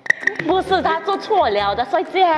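Speech only: people talking, with a short click right at the start.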